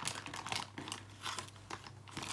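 Clear plastic foot-mask packaging crinkling as it is handled, a few short irregular crackles.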